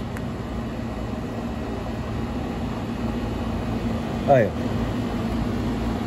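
Steady hum of running air-conditioning machinery, with a constant low tone.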